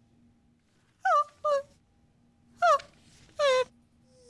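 A performer's voice making four short high cries in two pairs, each sliding down in pitch, as part of a freely improvised vocal piece.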